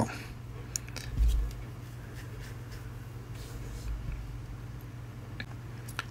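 Faint scratching strokes and light ticks of a comb and a Feather styling razor working through wet hair, with a dull low bump about a second in and a steady low hum underneath.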